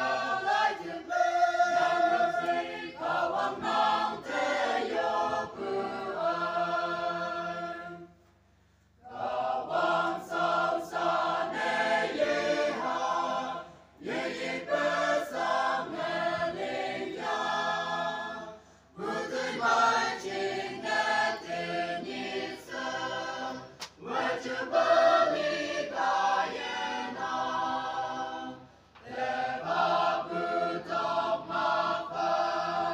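Choir singing in phrases of about five seconds, with short pauses between them; the longest pause is about eight seconds in.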